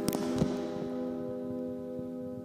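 The last chord of a twelve-string acoustic guitar ringing on and slowly fading, with a few sharp knocks in the first half second as the guitar is handled close to the microphone.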